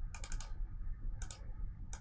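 Computer keyboard and mouse clicking in quick clusters while faces are being selected: a burst of several clicks just after the start, then a shorter burst a little over a second in.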